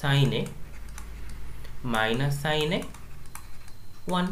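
Light tapping clicks of a stylus writing on a tablet, between two short phrases of a man's voice.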